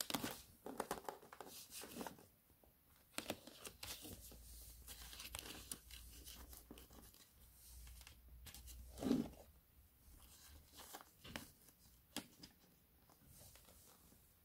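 Faint handling noise of multimeter test leads being picked up and their probe tips brought to a fan motor's stripped wires: irregular small clicks, scrapes and rustles, with paper crinkling under the hand and one louder rustle about nine seconds in.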